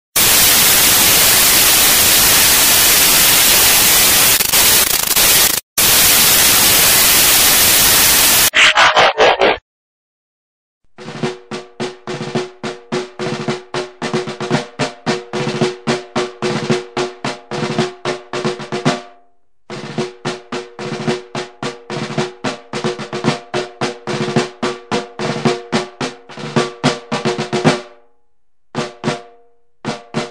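Loud, even television static hiss for about eight seconds. After a brief silence it gives way to a drum-led music track, with rapid beats about four a second over a steady pitched tone, which breaks off briefly twice.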